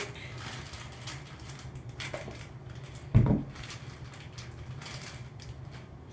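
Light clicks and rustling of a clear plastic container of cotton pads being handled and opened, with one short, loud thump about three seconds in, over a steady low hum.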